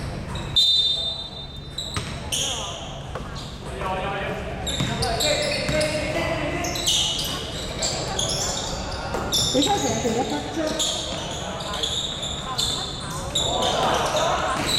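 Indoor basketball play in a large echoing gym: a short referee's whistle about half a second in, then the ball bouncing, sneakers squeaking on the court and players calling out.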